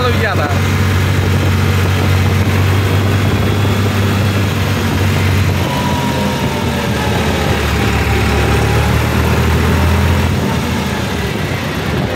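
New Holland 3630 tractor's three-cylinder diesel engine running steadily on the road, heard from the driver's seat. Its low note drops a step about six seconds in and again about ten seconds in as the tractor slows.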